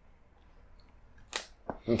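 Quiet shop room tone, then near the end a brief hiss and a sharp click: the string end being snipped off a freshly strung tennis racket after tying off. A spoken "Okay" follows right at the end.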